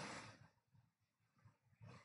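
Near silence: faint room tone in a pause of the narration, with the last of the speaker's voice fading out at the start.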